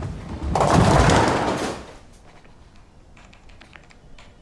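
A bowling ball rolling down the lane and striking the pins about half a second in, the pins crashing and clattering loudly for about a second before dying away.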